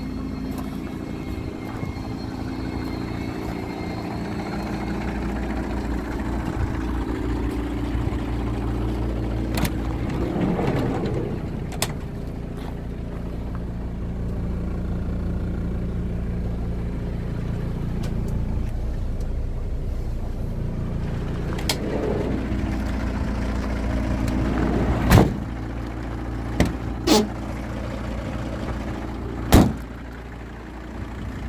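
An engine idling steadily, a low even hum, with a few sharp knocks or clicks near the end.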